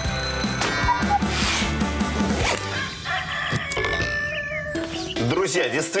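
Short sponsor jingle: music with a beat and the ring of an alarm-clock bell, ending in held tones. A man's voice begins near the end.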